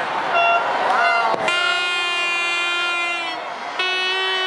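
A horn sounding one steady note for about two seconds, then starting again near the end, over crowd voices and whoops.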